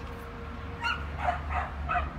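Alabai (Central Asian Shepherd) dog giving four short barks in quick succession, starting a little under a second in.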